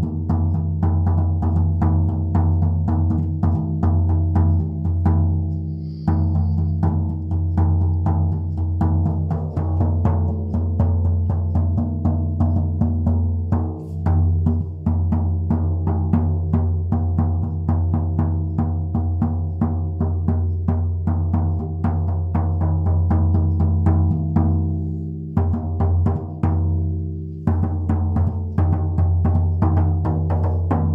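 Large shamanic frame drum struck with a soft padded beater in a fast, steady beat of several strokes a second, its deep booming ring sustained between strokes. The beat breaks off briefly a few times, letting the ring die away before it resumes.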